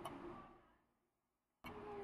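Near silence: faint room tone between spoken phrases.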